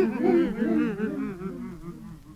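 The tail end of a track on a power-violence vinyl record: a warbling, pitched sound swooping up and down about four times a second, fading out.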